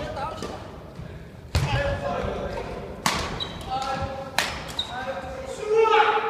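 Badminton racket striking a shuttlecock, three sharp hits about a second and a half apart, each ringing out in a large hall.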